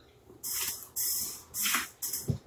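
Three short hissing breaths, one after another, blown out through pursed lips.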